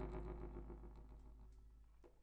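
Accordion chord held and dying away, fading steadily until it is faint by the end.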